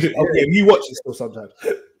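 Men's voices talking over one another on a video call, in short broken utterances.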